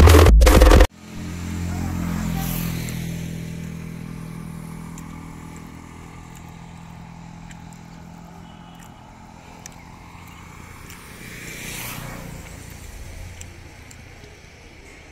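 Loud music that cuts off abruptly about a second in, followed by the engine of a road vehicle passing and fading away over several seconds. Near the end a second vehicle swells past and fades.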